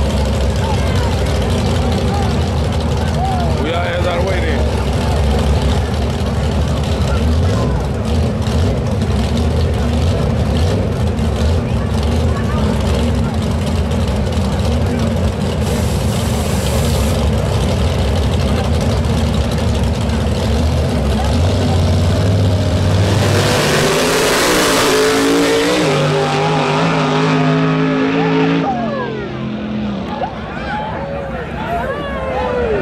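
Drag-racing cars idling at the starting line with a steady low rumble, then about 23 s in they launch at full throttle in a loud burst, the engine note climbing and stepping up as they pull away down the strip and fade. Crowd voices underneath.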